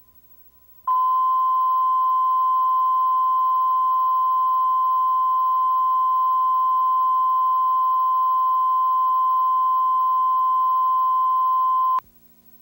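1 kHz line-up tone that accompanies colour bars at the head of a videotape, used to set audio levels. It is a single steady beep that starts about a second in and holds unchanged at one pitch and level.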